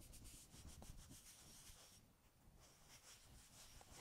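Faint rubbing of a dry sponge on the base of a glazed ceramic cup, wiping the glaze off the foot, with a brief lull in the middle.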